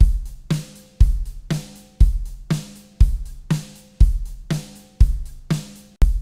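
A drum-kit beat played back through a multiband compressor with its low band bypassed. A kick drum lands about once a second, a second drum hit falls halfway between, and cymbals ring over them.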